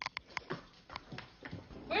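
A few short, sharp clicks at uneven spacing, most of them in the first second and a half.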